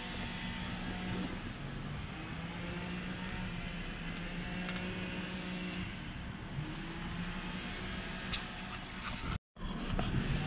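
Faint, steady hum of a distant motor under outdoor background noise, with a single click about eight seconds in. The sound cuts out completely for a moment just before the end.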